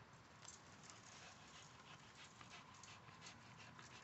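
Near silence: faint breathing and rustling of a dog tugging on a spring-pole rope, with scattered faint ticks.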